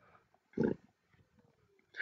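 Near silence broken about half a second in by one short, low, grunt-like vocal sound from the lecturer.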